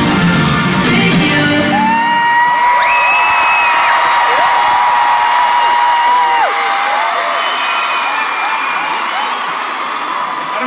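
Live pop band music ends about two seconds in, and an arena crowd of fans keeps on screaming and cheering. Several long high-pitched screams stand out, one held for about five seconds.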